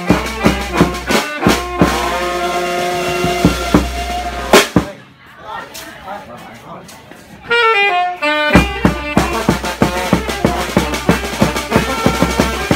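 Brass-band music with a regular drum beat and long held horn notes. About five seconds in the music drops away briefly, then a quick run of notes falls in pitch and the drumbeat picks up again.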